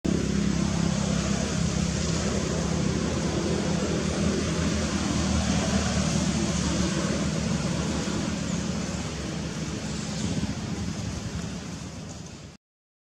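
Steady low rumble of motor traffic with an engine hum underneath, fading out near the end.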